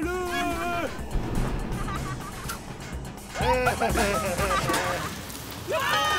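Wordless cartoon character voice sounds over background music. There is a held vocal cry at the start, a burst of cries midway, and another long held cry near the end.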